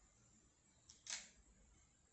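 Near silence, broken about a second in by one brief rustle as sheer fabric is moved and smoothed over a wooden board.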